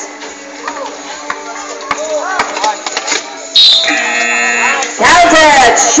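Background music with crowd noise. About three and a half seconds in, a loud steady pitched signal sounds for about a second and a half as the game clock runs out, marking the end of the game. A man's loud voice follows near the end.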